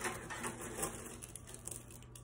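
Faint rustling of a plastic mesh bag and light clicks of small, hard tumbling-grit pieces knocking together as they are picked out by hand.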